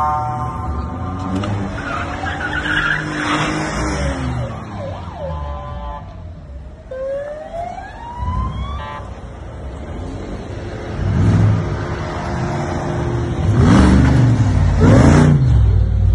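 A siren wails in rising and falling sweeps over the low rumble of car engines as a convoy drives through. Engines pass close by and grow louder near the end.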